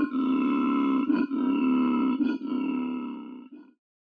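A low, steady grunting drone with brief breaks about once a second, fading out near the end.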